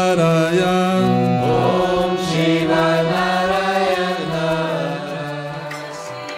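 Devotional Hindu mantra chant, sung with gliding pitch over a steady low drone, easing down in level near the end.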